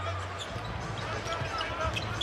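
Basketball being dribbled on a hardwood court during play, over the steady murmur of an arena crowd.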